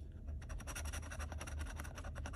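A metal scratching tool scraping the coating off a paper scratch-off lottery ticket in a fast run of short strokes.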